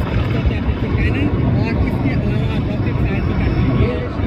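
Military helicopter flying overhead, a steady low rumble of rotor and engine, with indistinct voices over it.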